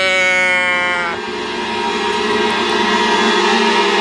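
A bleat-can noisemaker toy being tipped over in the hands, giving one slightly falling bleat about a second long. It is followed by music with held tones.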